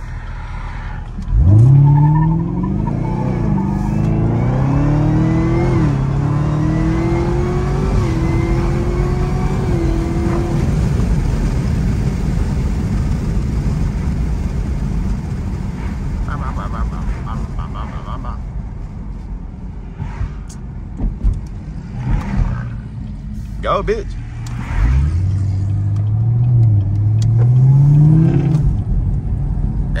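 Supercharged 6.2-litre V8 of a Chevrolet Camaro ZL1 at full throttle, heard from inside the cabin. The engine note climbs and drops back through about four upshifts over the first ten seconds, then gives way to steady road and wind noise, and near the end it climbs again through one more shift.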